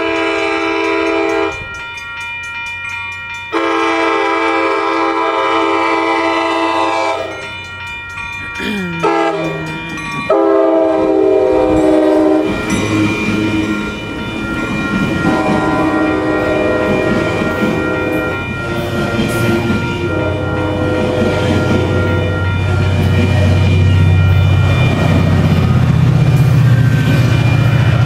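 ACE commuter train locomotive sounding its multi-note horn in a series of long blasts as it approaches and passes; the horn's pitch drops sharply as the locomotive goes by, about nine seconds in. Further blasts follow as it moves away while the passenger cars roll past with a low rumble that grows toward the end.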